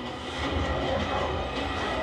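Soundtrack of a heavy armoured transport truck driving, a low steady rumble and rattle that grows louder about half a second in.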